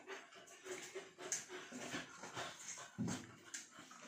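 Grated vegan cheese being slid from a plate into a frying pan: soft rustling with faint short tones in the first half and a dull thump about three seconds in.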